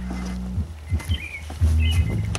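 A low steady hum that cuts off about half a second in, then a couple of short, faint bird chirps with a few soft bumps of the camera being handled.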